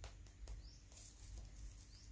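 Near silence: room tone with a couple of faint soft clicks and two faint, short, high rising chirps.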